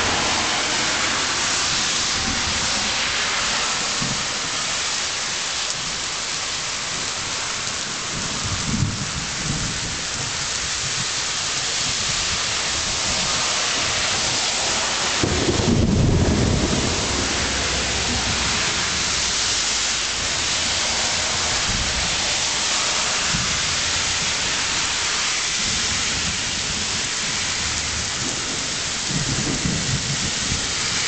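Heavy thunderstorm: hard rain falling steadily, with low rumbles of thunder. The loudest rumble comes about halfway through, with weaker ones near nine seconds and near the end.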